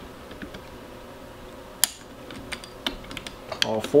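Light metallic clicks and taps as a preset T-handle torque driver is fitted to and turned on the steel clamp bolts of a rifle chassis. There is one sharper click a little under two seconds in, and a few smaller ones after it.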